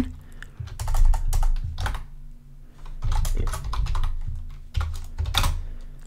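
Typing on a computer keyboard: runs of key clicks, a short pause about two seconds in, then more typing, over a faint steady low hum.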